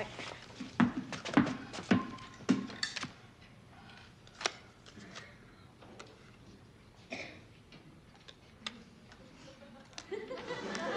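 A basketball dribbled on a wooden floor: five or six bounces about half a second apart, fading as it is carried away. After that come only a few faint scattered clicks.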